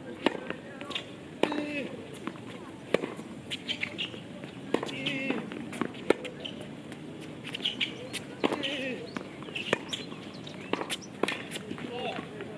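A tennis rally on a hard court: a serve, then the sharp pops of the ball coming off racquet strings and bouncing, one every second or two.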